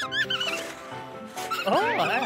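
A cartoon character's high, squeaky, wavering vocal noises of delight over background music, with two arching rise-and-fall voice glides near the end.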